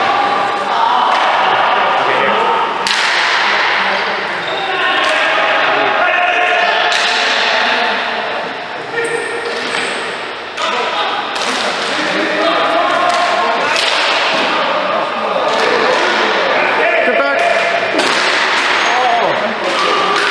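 Ball hockey play in an arena: sharp, irregular knocks of sticks, ball and boards ringing through the hall, with players shouting.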